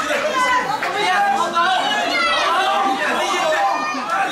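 Crowd chatter: many voices talking over one another at once.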